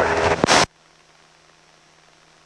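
Loud in-flight cockpit sound of a Piper Tri-Pacer cuts off abruptly just over half a second in, leaving only a faint steady electrical hum.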